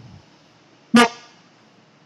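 A single short, loud shouted call about a second in: a person barking out one number in a counting drill, clipped like a military command.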